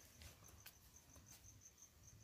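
Near silence with a faint cricket chirping: one high note pulsing evenly, several pulses a second, and a few faint clicks.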